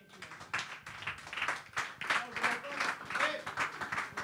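Light, scattered hand clapping from a small crowd, with voices chatting underneath.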